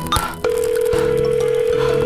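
Telephone sound effect of dialing 911: a short keypad beep, then a steady phone tone held for about a second and a half.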